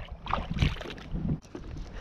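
Water splashing and handling noise at the side of a kayak, with wind on the microphone; the noise comes in bursts in the first second, then settles.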